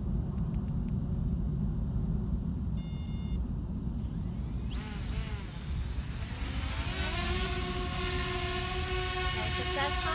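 DJI Spark mini drone's propeller motors spinning up from her hand with a rising whine about five seconds in, then settling into a steady buzzing hover whine as it lifts off. Wind rumbles on the microphone throughout, with a brief high beep about three seconds in.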